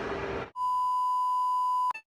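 A steady electronic beep: one high pure tone held for about a second and a half, starting abruptly about half a second in and cutting off sharply.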